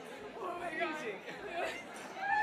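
Indistinct chatter of several voices talking at once, none of it clear enough to follow.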